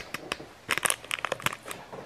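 Crinkling and crackling of a small plastic powder sachet being handled and opened, with a dense run of crinkles about a second in.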